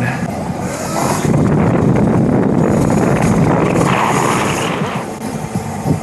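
Steady rushing wind and road noise on a bike-mounted action camera's microphone as an e-bike rides along a road.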